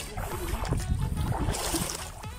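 Shallow water sloshing and splashing underfoot as someone wades, with brief splashes about a second and a half in, over a low wind rumble on the microphone.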